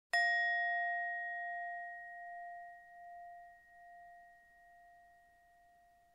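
A single bell struck once, ringing out in a clear tone that fades slowly with a wavering loudness. It marks the change from one qigong exercise to the next.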